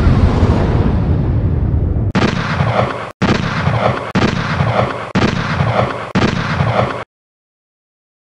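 Title-sequence sound effects: the tail of a big explosion-like boom dies away over the first two seconds, then five gunshot effects come about a second apart, each with a long rumbling tail, and the sound cuts off at once about seven seconds in.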